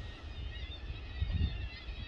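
Wind buffeting the microphone outdoors, heard as an uneven low rumble that swells and drops, with no voice over it.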